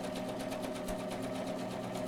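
Electric sewing machine stitching fabric at a steady speed: a fast, even rattle of needle strokes over the motor's hum.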